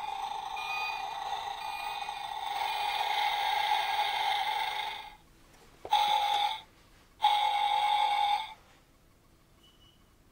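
Dickie Toys tow truck's electronic sound module playing through its small speaker when its side buttons are pressed: a steady electronic tone for about five seconds, then two shorter blasts of the same tone about a second apart.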